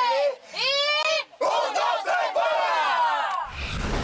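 Several young adults yelling and cheering in celebration: long, loud, overlapping shouts. A brief low rumble comes near the end.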